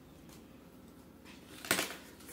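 Quiet handling of paper strips, with one short sharp knock near the end as a pair of scissors is set down on the table.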